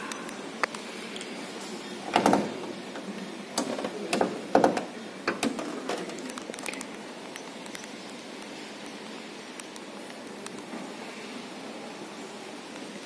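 The hood of a 1986 Honda Accord being opened by hand: a handful of short metallic clicks and clunks from the hood latch, safety catch and hinges in the first half. The engine is not running.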